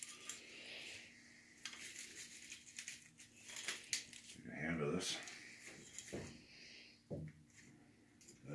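Dry split cedar kindling sticks clicking and clattering against one another as they are pulled from a mesh bag by the handful and set into a cast-iron stove's firebox, a quick run of light, sharp clicks.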